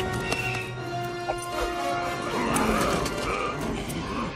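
Dramatic orchestral film score, overlaid with sharp impact sound effects and, about halfway through, a wavering animal-like cry.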